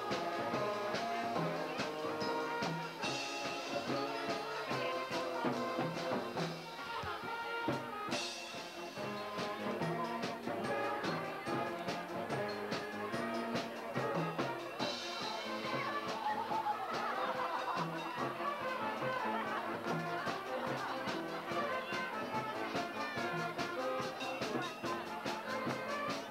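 Band music with brass instruments playing with a steady beat, with a few short crashes of hiss about 3, 8 and 15 seconds in.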